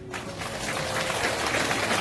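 Congregation applauding. The clapping starts just as the closing amen dies away and grows louder over the first second and a half.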